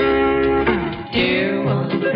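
Country guitar music: held notes, a short dip about a second in, then a new phrase with bending notes.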